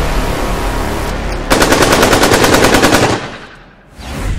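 Intro sound effect: a loud rushing rumble, then about a second and a half in a rapid burst of machine-gun fire lasting under two seconds, which then fades.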